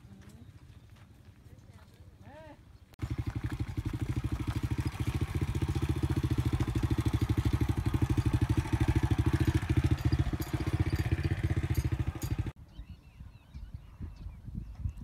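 Small step-through motorcycle engine running steadily close by with a rapid, even chugging pulse. It starts abruptly about three seconds in and cuts off suddenly near the end.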